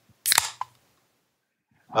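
A brief click-like noise about a quarter second in, then near silence until a man starts to speak at the very end.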